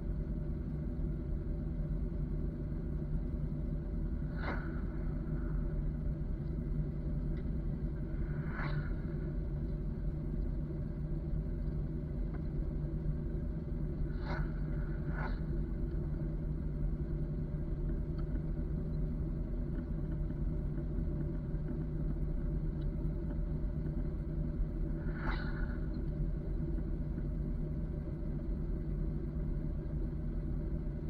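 Pickup truck engine idling steadily with a deep, even rumble. Five brief clicks come through it, spaced irregularly a few seconds apart.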